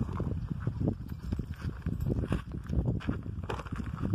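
Horse hooves stepping and shifting on stony, gravelly ground: a run of irregular low knocks.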